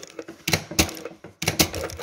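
Industrial sewing machine stitching curtain heading tape onto organza in a few short, irregular runs with brief pauses between.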